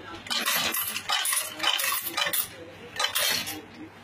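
Electronic coin sorting and counting machine running, coins clinking and jingling in quick irregular clusters as they pass through and drop into the sorted bins. The clinking dies away near the end, leaving a low hum.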